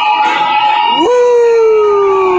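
A man howls along to hard rock music: about halfway through his voice swoops up into one long, slowly falling "ooo". A held note from the music sounds before it.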